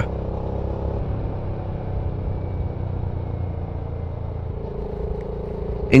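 BSA Gold Star 650's single-cylinder engine running steadily while the motorcycle is ridden along, with a low rumble. A humming tone comes in about four and a half seconds in.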